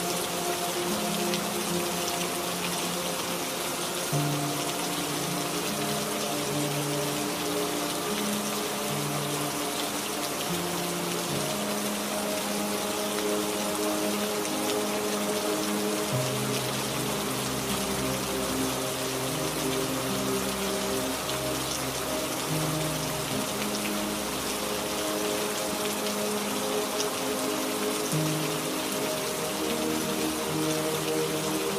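Steady rain falling, with soft ambient music of slow, held low notes laid over it.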